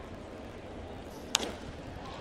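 A single sharp crack of a baseball bat on a 100 mph four-seam fastball about a second and a half in, the ball popped up into a high fly, heard over the low murmur of a ballpark crowd.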